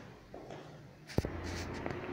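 Soft shuffling footsteps on a tiled floor, then a sharp click just after a second in, followed by a low rumble of handling noise on the phone's microphone.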